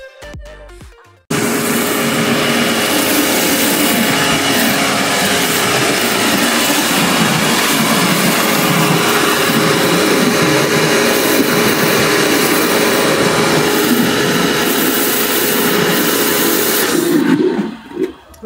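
Intro music fades out, then a small electric pressure washer comes in suddenly about a second in and runs steadily: a motor hum under the loud hiss of the water jet spraying through a round rotary patio-cleaner attachment onto paving slabs. It stops just before the end.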